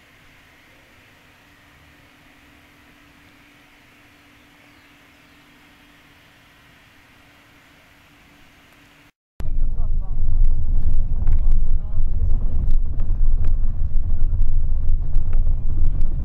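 Faint steady hiss with a faint low hum. About nine seconds in, a hard cut to the loud low rumble and rattle of a moving vehicle, heard from on board.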